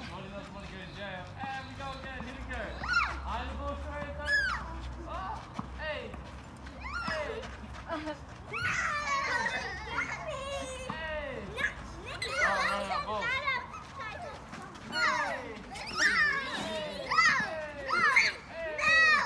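Young children calling and shouting in high voices while they play a running game, in bursts that come more often and louder in the second half.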